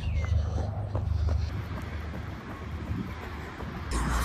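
Wind buffeting the camera's microphone during a run, a low rumble that is strongest for about the first second and a half and then eases.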